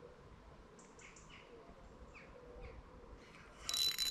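Faint small-bird chirps over quiet waterside ambience. Near the end a spinning reel suddenly starts whirring loudly as a tench is hooked on the ultralight rod.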